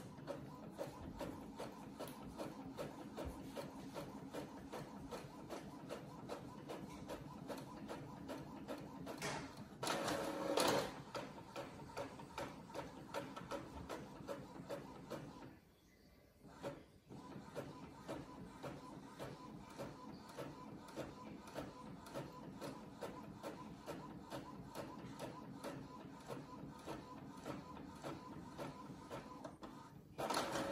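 Home printer printing pages of a sewing pattern: a steady run of rapid ticks from the working mechanism, with a louder stretch about ten seconds in and a brief pause a little past halfway.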